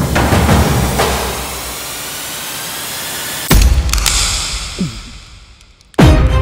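Dramatic film-soundtrack sound-design hits: a deep boom with a noisy wash at the start, and a second deep boom about three and a half seconds in, fading away near the end.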